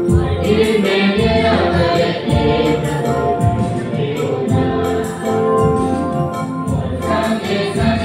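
A group of voices singing a Christian worship song together with instrumental accompaniment and a steady beat.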